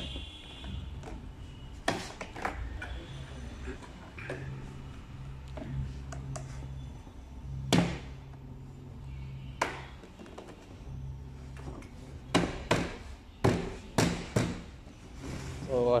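Plastic panels of an RFL Caino fence rack being pressed and knocked into place by hand: scattered clicks and knocks, then a quick run of five or six sharper knocks about three-quarters of the way through. A low steady hum sits underneath.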